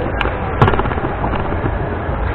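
Wheelchair rolling over a parquet floor: a steady low rumble, with two sharp knocks in the first second, the second louder.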